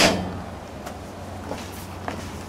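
A single thud right at the start dying away, then the swapped-in Ford Barra 4.0 L inline-six idling with a steady low hum.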